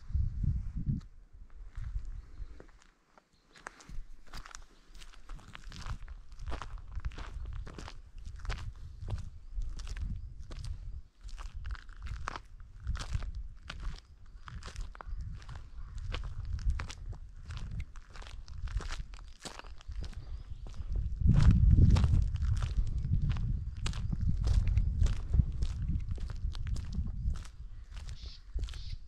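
Footsteps of a person walking steadily over mountain ground and low shrubs, about two steps a second. Under them is a low rumble, loudest about two-thirds of the way through.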